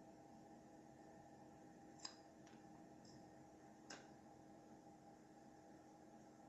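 Near silence: faint room tone with a steady low hum, broken by a few faint clicks of hard printed plastic parts being handled, about two seconds in and again near four seconds.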